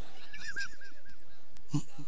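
A faint animal call, a quick run of about five short arching notes in the first half, over steady background noise.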